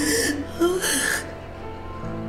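A woman sobbing, with two gasping breaths in the first second, over soft sustained background music.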